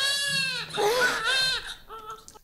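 A newborn baby crying in three short, arching wails.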